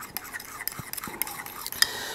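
A metal spoon stirring a thin mayonnaise-based sauce in a glazed ceramic bowl, with light, irregular clicks and scrapes of the spoon against the bowl.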